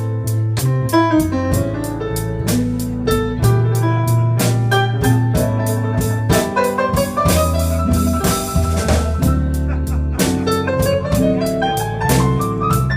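Live blues band in an instrumental break: fast keyboard runs over drums and bass, with the runs climbing in pitch near the end and a cymbal wash a little after the middle.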